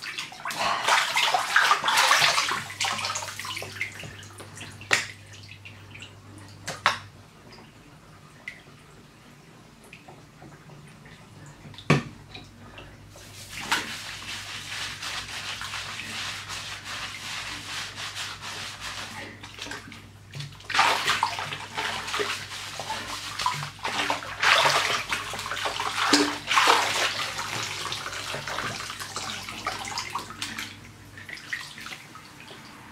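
Bathwater splashing and sloshing in a bathtub as hair is wetted, shampooed and rinsed by hand. There are a few sharp knocks in the first half, a steady stretch of scrubbing noise in the middle while the shampoo is worked into a lather, and louder splashing near the end as it is rinsed out.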